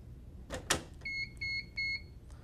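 A sharp double click as the thermal label printer's printhead release lever is flipped open, followed about a second in by three short, evenly spaced electronic beeps from the printer.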